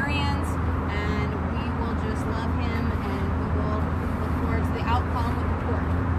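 Steady low rumble of road traffic, with short indistinct voice fragments now and then over it.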